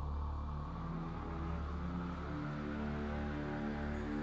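Background music of long held low notes that shift every second or so, with no beat.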